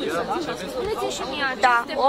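Only speech: several people talking over one another, with one voice saying "da" near the end.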